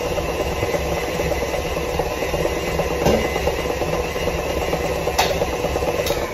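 KitchenAid tilt-head stand mixer running steadily on high speed, its beater whipping cake batter in the stainless steel bowl.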